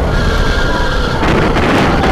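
Racing kart engine running at speed, heard onboard with heavy wind rumble on the microphone; its note steps down a little about halfway through as the kart goes through a bend.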